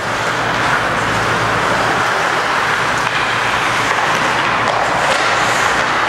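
Steady rushing noise of hockey skates scraping and carving the ice during play, over a low steady hum, with a few faint clicks.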